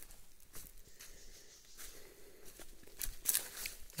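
Footsteps crunching and rustling through dry bamboo leaf litter and brush, a run of small crackles with a few louder crunches about three seconds in.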